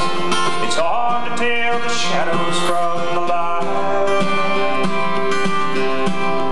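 Live country song on a strummed acoustic guitar with a man singing; the voice drops out about halfway and the guitar carries on alone.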